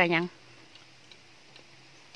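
A short spoken word at the start, then quiet with a faint steady low hum and a few soft, scattered ticks.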